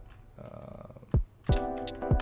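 Home-made boom-bap hip-hop beat playing back: a kick drum, sharp clap and hat hits, and a sustained chord sample. It is faint through the first second, then a kick lands just over a second in and the chords come back with the drums at about a second and a half. The kick is placed just off the grid to give the groove a bounce.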